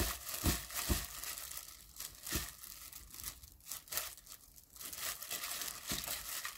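Disposable plastic glove crinkling and rustling as a gloved hand squeezes and mixes seasoned butterbur greens in a glass bowl. There are a few soft low thumps in the first few seconds.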